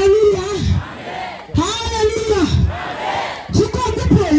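A man shouting three long, drawn-out calls about a second and a half apart, with a crowd's voices and quieter voices in the gaps between them.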